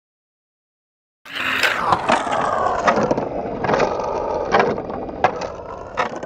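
Skateboard rolling on concrete, its wheels running with a string of sharp clacks and knocks; it starts about a second in and dies away near the end.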